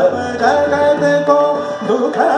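Indian classical music in Raag Durga: a male voice singing held notes that step between pitches, accompanied by tabla.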